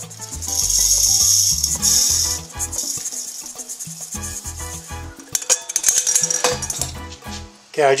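Coarsely ground wheat poured from a metal pan into a metal grain-mill hopper: a hiss of grain sliding for about two seconds. It is followed by irregular rattling and clinking of grain and metal as the pan is tipped and shaken out.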